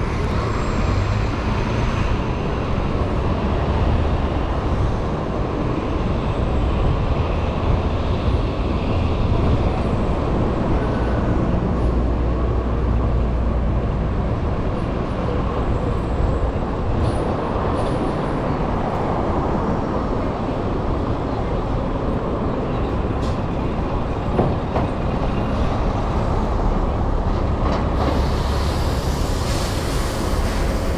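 Steady rush of wind on the microphone from riding an electric scooter, over the noise of city street traffic.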